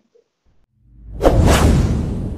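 A whoosh sound effect from a subscribe-button animation. It swells up fast from silence about a second in, with a deep rumble under a rushing hiss, then starts to fade slowly.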